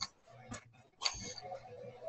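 A few faint clicks, about half a second apart, over low background noise in a lull between speakers on an online video call.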